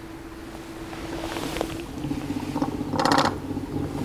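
Electric trolling motor on a bass boat humming steadily; about two seconds in its pitch drops as the motor's speed changes. Near three seconds a short rasping burst is heard over it.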